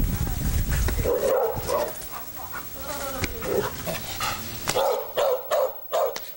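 A Taiwan Dog barking aggressively in a quick, irregular run of barks, preceded by a low rumble in the first second. The barking is a territorial warning at a stranger who has come too close.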